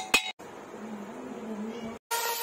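Last few hammer taps on a freshly welded mild steel angle, each strike ringing the steel. After a sudden cut, a faint wavering pitched sound runs on at a much lower level.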